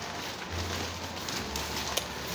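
Rustling handling noise as a tablet is moved about, with a low hum partway through and a sharp click near the end.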